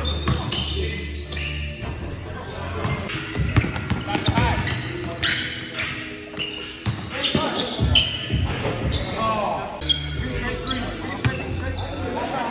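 A basketball bouncing and being dribbled on a hardwood gym floor, with repeated sharp knocks, short high squeaks and players' voices, all echoing in a large hall.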